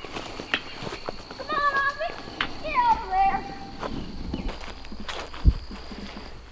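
Footsteps of a child running across grass, a quick run of soft thuds. Two high-pitched calls ring out, about one and a half and three seconds in.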